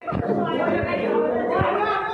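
Many students' voices chattering and calling out at once in a classroom, with a few dull thumps about a quarter second, just under a second, and about a second and a half in.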